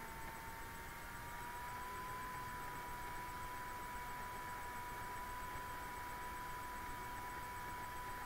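Quiet room tone: a low hiss with a faint steady whine that rises slightly in pitch about a second in and then holds.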